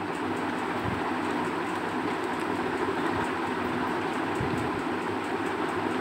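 Steady, even rushing background noise with no breaks; no continuity beep from the multimeter is heard.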